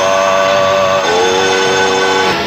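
A man's voice chanting in long held notes. The pitch steps to a new note about a second in.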